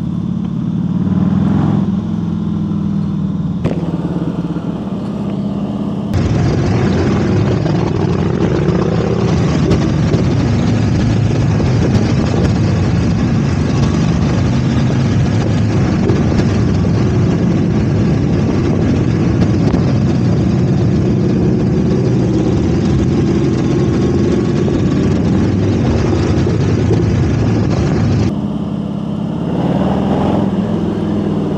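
Harley-Davidson Heritage Softail's V-twin engine running as the bike rides through a village street, its exhaust sound carrying between the houses. After about six seconds it gives way to a louder rush of another motorcycle's engine and wind, and the Harley returns near the end.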